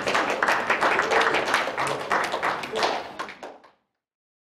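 Audience clapping, a dense patter of claps mixed with people talking, fading out about three and a half seconds in.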